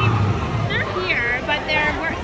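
People talking over the chatter of a crowd, with a low hum underneath at the start.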